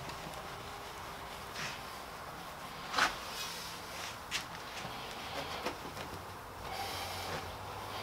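Cloth rubbing over the metal bed of a jointer, buffing off dried paste wax, with a few short knocks; the sharpest knock comes about three seconds in.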